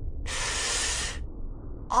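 A steady hiss about a second long that starts just after the beginning and cuts off suddenly.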